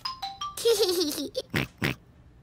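Cartoon piglet's wavering voice, then two quick snorts, over a few short light musical notes.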